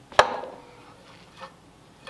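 One sharp metal clank with a short ring that fades over about half a second, then a faint tick about a second later, from metal parts being handled at a bench vise holding an old throttle linkage.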